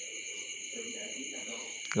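Pause in speech filled by steady high-pitched background tones, with a faint low murmur and one short click near the end.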